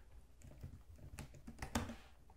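Faint typing on a computer keyboard: a short run of quick keystrokes, most of them in the second half.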